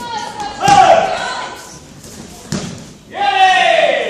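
A voice shouting twice, each shout loud, drawn out and falling in pitch, with a single thud between them.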